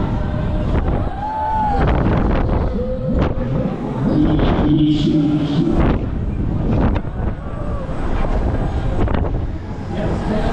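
Wind rushing over the microphone of a camera riding a swinging pendulum fairground ride, with a few sharp knocks and a mix of fairground noise and voices beneath it.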